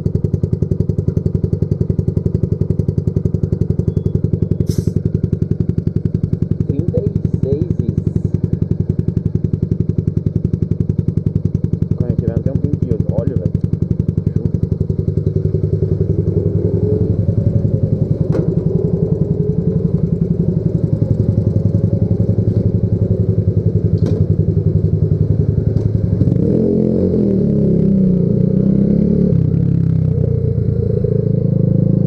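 Yamaha Factor 150's single-cylinder four-stroke engine running at a steady idle. About four seconds before the end its note gets louder and rougher as the bike pulls away under load.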